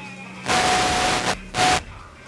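Two loud bursts of hissing, the first almost a second long and the second short, each with a steady whistle tone running through it.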